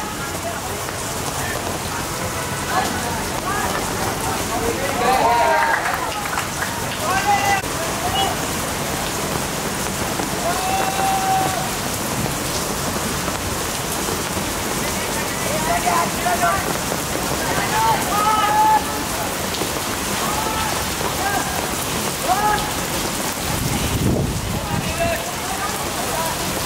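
Heavy rain falling steadily, with short voices calling out now and then through it. There is a low rumble about two seconds before the end.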